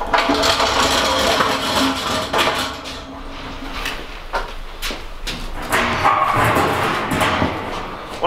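A tall cylinder of thin rolled sheet metal being handled and stepped into, its thin walls scraping, rattling and flexing. It is loudest at the start and again near the end.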